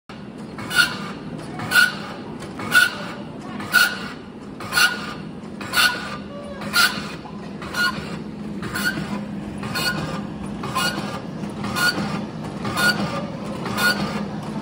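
Gummy making machine running: a steady low hum with a sharp, regular clack about once a second.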